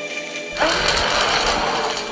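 A loud, rough dinosaur roar sound effect, starting about half a second in and lasting about two seconds, over background music.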